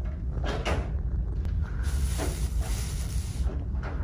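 Shop-floor ambience picked up by a handheld phone: a steady low rumble with a few faint knocks. A hiss comes in about two seconds in and lasts over a second.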